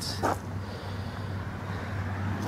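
Steady low background rumble and hum outdoors, with a short soft sound just after the start.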